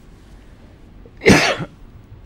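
Low room tone, then a single short cough a little over a second in.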